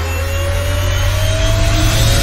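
A rising whoosh transition effect: a noisy swell over a deep rumble, with one tone climbing slowly in pitch as it grows steadily louder.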